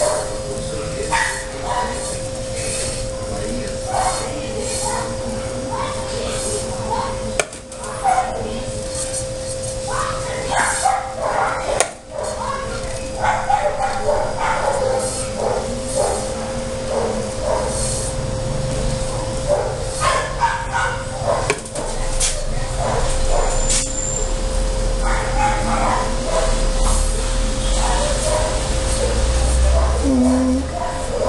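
A dog barking off and on, with voices in the background and a steady hum underneath.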